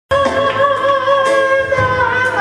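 A man singing long, held notes with a slow waver into a microphone, in the style of gospel singing; the sound cuts in just after the start.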